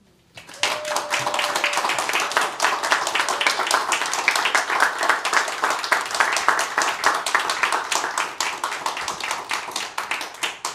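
Applause from a small seated audience: many hands clapping, starting about half a second in and tapering off near the end.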